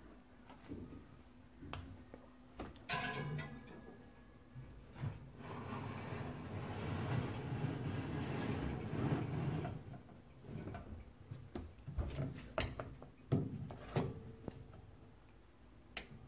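Glass jars being handled on an oven's metal wire rack: scattered light clinks and knocks, with a few seconds of rustling noise in the middle and a couple of sharp clicks near the end.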